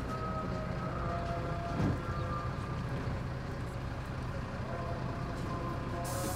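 Steady drone of a bus engine heard from inside the passenger cabin, with a faint whine that drifts slightly in pitch. There is a brief thump about two seconds in.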